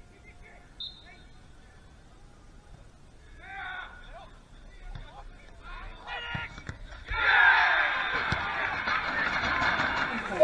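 Footballers' shouts on the pitch, a few short separate calls at first. From about seven seconds in, as the ball is played into the goalmouth, they give way to a louder continuous mix of shouting and crowd voices.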